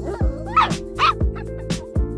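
Samoyed puppy giving two short, high yips about half a second apart, over background music with a drum beat about twice a second.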